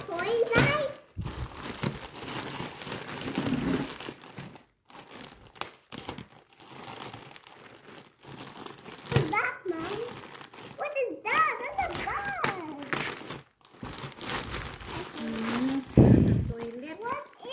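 Plastic courier mailer bag crinkling and rustling as hands tear, cut and pull it open, loudest in the first few seconds. Children's and adults' voices break in partway through.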